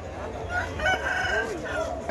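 An ayam ekor lidi rooster crowing once; the crow starts about half a second in and lasts about a second and a half.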